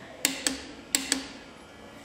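Click-type torque wrench clicking on a cylinder-head bolt of an IH C-153 engine as it reaches the set 75 pounds of torque: two sharp double clicks less than a second apart, each with a short metallic ring.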